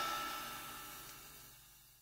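The last chord of an acoustic swing band with violin, guitar and double bass ringing out and fading, dying away to silence about one and a half seconds in: the end of the track.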